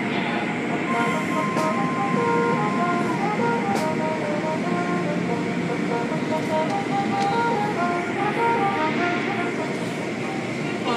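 Automatic car wash heard from inside the car: a steady rush of water spray and cloth curtain strips sweeping over the windshield. A tune plays along underneath.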